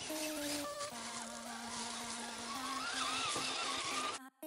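Background music with a held low note, over the whine of a Redcat Gen8 Scout II RC crawler's electric motor, its pitch wandering and climbing about three seconds in as the truck works over rocks.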